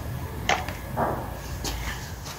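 A few short knocks and clicks of hand tools being handled and set down on concrete, over a steady low rumble.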